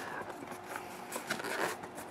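Faint scraping and rustling of hands handling a cardboard tablet box, with a few small clicks as it is tilted and gripped.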